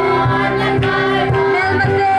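A mixed group of men and women singing a song together, with a low instrumental line running beneath the voices.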